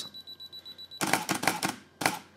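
Canon EOS 5D Mark II self-timer beeping rapidly for about a second, then the shutter and mirror firing in a quick burst of clicks as the camera takes a three-shot exposure bracket.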